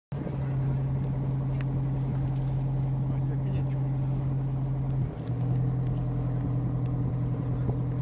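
A boat's engine running steadily, a low even hum that dips briefly about five seconds in.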